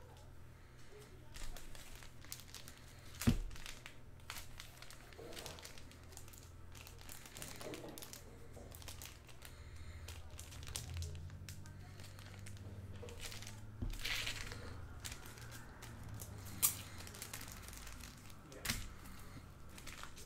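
Foil trading-card pack wrappers crinkling and cards being handled, with scattered crackles and a few sharp clicks, the loudest about three seconds in and twice near the end, over a low steady hum.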